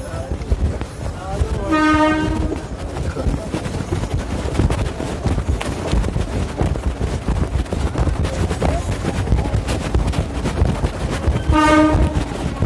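Passenger train running with a steady rumble and clattering rattle. A short, steady horn sounds about two seconds in and again briefly near the end.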